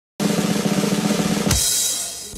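A fast drum roll that ends about one and a half seconds in on a single crash with a ringing cymbal wash.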